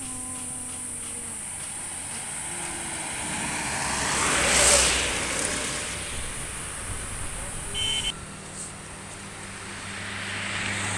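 A road vehicle passing close by on a highway. Its engine and tyre noise rises to a peak about halfway through and then fades, over a steady high insect drone.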